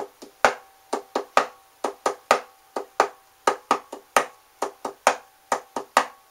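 Acoustic guitar struck percussively by the right hand in a steady rhythm: about three or four sharp, muted hits a second, with a faint ringing note under them.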